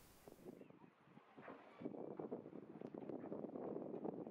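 Faint outdoor ambience with light wind on the microphone, growing somewhat louder about two seconds in.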